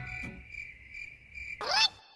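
Crickets chirping: a steady high trill with short chirps a few times a second. Near the end a short voice-like sound glides up and then down.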